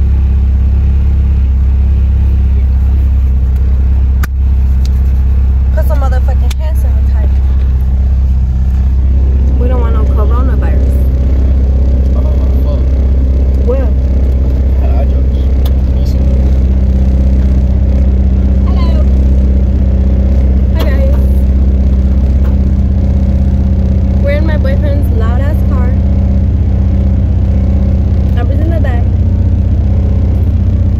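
Steady low drone of a car's engine and road noise heard inside the cabin, with a couple of brief knocks early on.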